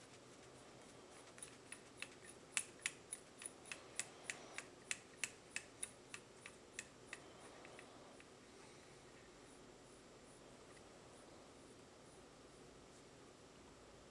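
Micrometer ratchet thimble clicking, about twenty sharp light clicks at roughly three a second, as the tool is closed onto the bore of a connecting rod's small end; the clicks stop after about seven seconds, leaving only faint room tone.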